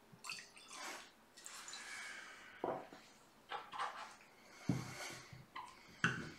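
Scotch whisky poured from a bottle into a Glencairn glass, a faint trickle and splash of liquid. It is followed by a few small, sharp knocks from the bottle and glass being handled, the loudest sounds here.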